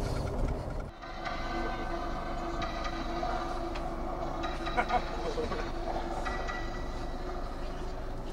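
Tour bus interior: a low road-and-engine rumble for the first second, then a steady droning hum of several held tones that shift in pitch a few times.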